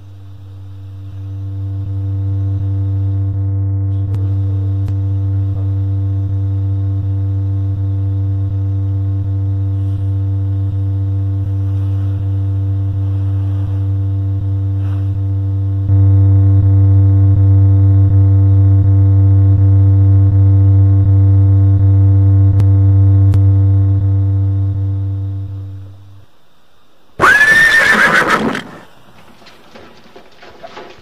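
A low, steady droning tone swells in, grows louder about halfway through, then fades away. About a second later a sudden loud shriek with a bending pitch bursts out for about a second and a half, a horror-score jump-scare sting.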